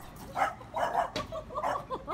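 A small dog making several short, high calls, spaced a little under half a second apart.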